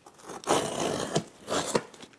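Large corrugated cardboard shipping box being handled, its cardboard scraping and rustling, with a couple of sharper knocks.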